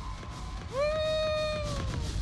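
A man's voice over a concert PA giving one long drawn-out call, gliding up about 0.7 s in, holding a steady note for about a second, then falling away near the end, over a low rumble.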